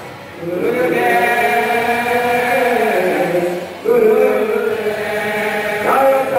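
Devotional kirtan chanting: voices sing long, held, melodic phrases, with a new phrase starting just under a second in and another about four seconds in.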